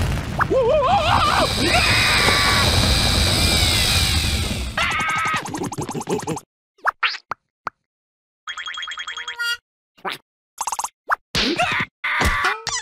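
Cartoon sound effects: a loud rushing whoosh with a deep rumble under the larvae's wavering squeals for about six seconds, then a string of short comic effects and a burst of rapid electronic chirps about nine seconds in.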